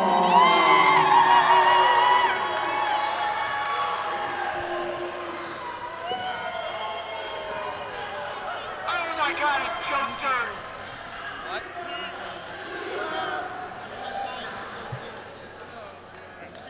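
Small wrestling crowd cheering and shouting, several voices yelling over each other, loudest at first and slowly dying down, with a brief burst of yells about nine seconds in.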